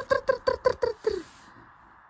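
A baby laughing in a quick run of about seven high-pitched bursts, stopping a little over a second in.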